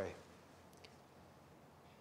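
Near silence: quiet room tone after the last spoken word fades, with one faint click a little under a second in.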